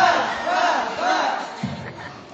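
A group of boys' voices shouting a repeated chant in unison, about two shouts a second, echoing in a large hall.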